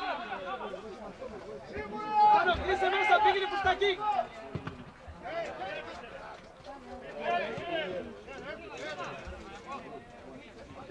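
Men's voices shouting and calling out on and around a football pitch, loudest from about two to four seconds in, with another round of shouts around seven seconds.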